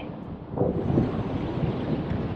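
A steady rushing, wind-like noise, swelling slightly about half a second in.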